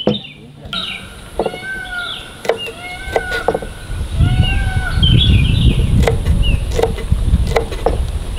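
Birds calling outdoors with a few sharp knocks of cooking utensils on wood. From about halfway a louder low rumble comes in under them.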